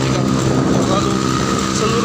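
Motorcycle engine running steadily under way, with tyre and road noise from the surrounding traffic.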